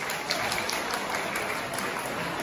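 Light applause from the audience, a scattering of hand claps.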